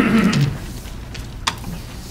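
Chairs creaking and shifting as people sit back down at a meeting table, with a short pitched creak at the start and a sharp click about one and a half seconds in.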